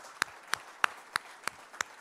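Audience applauding, with one loud nearby clapper keeping a steady beat of about three claps a second over the softer clapping of the crowd; the close claps stop near the end while the crowd's applause carries on.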